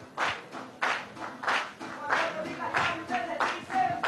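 A group of people clapping their hands in time, a steady rhythm of about two claps a second.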